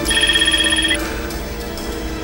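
Mobile phone ringing with a high, fluttering electronic ring for about a second, then stopping as it is answered. Soundtrack music plays underneath.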